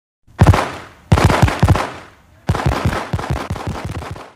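Fireworks going off: three bursts of rapid crackling pops, each dying away before the next.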